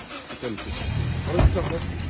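A motor vehicle's engine running, a low steady hum that comes in about half a second in, with a single thump near the middle.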